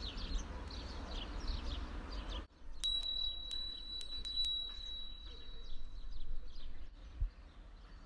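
A chime rings in a quick run of about six bright strikes over a held high note, starting about three seconds in and fading a few seconds later. Birds chirp in the background throughout.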